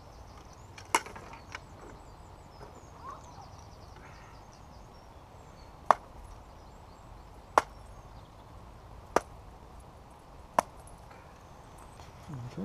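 Five sharp knocks of a priest striking a freshly caught trout on the head to dispatch it: one about a second in, then four more about a second and a half apart from about six seconds in.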